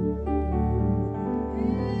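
Slow worship music with sustained keyboard chords. About one and a half seconds in, a voice sings a short wordless note that rises and then falls.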